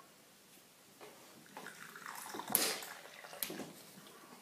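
Tea being poured from a metal teapot into a cup: liquid trickling and splashing, starting about a second in, with a louder splash in the middle.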